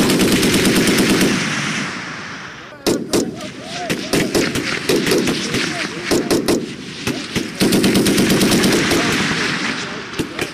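Automatic small-arms and machine-gun fire from a firing line in rapid bursts. There are two long stretches of fast fire, one at the start and one about 7.5 seconds in, with single shots and short bursts in between.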